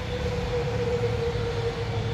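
Ford 3000 tractor's three-cylinder engine idling steadily, heard close to the engine block: an even low rumble with a steady hum above it.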